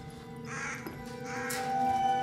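Film score of sustained, held notes with two harsh crow caws over it, the first about half a second in and the second near the end.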